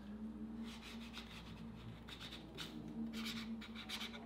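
Silver marker scratching across a cardboard cutout in a series of short, faint strokes as a signature is written.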